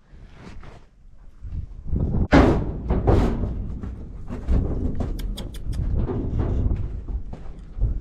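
Horses moving about inside a stock trailer: hooves thudding on the trailer floor, with two loud noisy bursts about two and three seconds in and a few sharp clicks a couple of seconds later.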